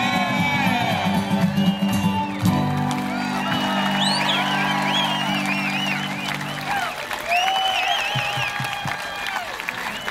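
A band holds the last chord of a country song, cutting off about seven seconds in, while a crowd cheers, whoops and applauds.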